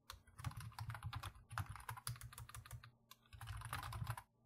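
Typing on a computer keyboard, a quick run of keystrokes with a brief pause about three seconds in.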